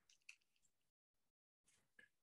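Near silence: faint room tone with one small click about a quarter second in.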